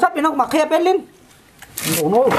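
Speech for about the first second, then a short pause, and a brief burst of noise near the end.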